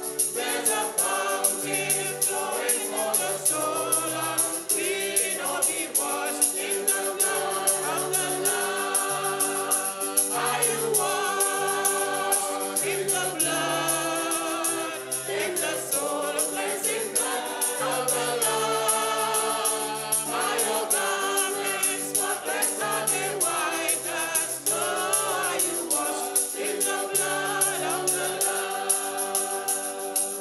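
Gospel music: a choir singing in harmony, with a tambourine keeping a steady beat over low bass notes.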